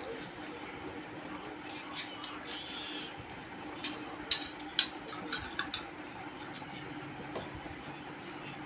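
A person eating rice by hand: a short run of sharp mouth smacks and clicks about halfway through, the two loudest close together, over a steady low background hum.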